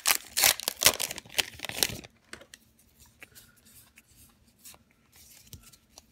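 A Pokémon TCG Generations booster pack's foil wrapper being torn open, a loud crackly tearing and crinkling for about two seconds. After that only faint rustles and small ticks of the wrapper and cards being handled.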